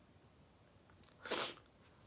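Near silence, then about a second and a half in, a man's single short sniff through the nose as he chokes back tears.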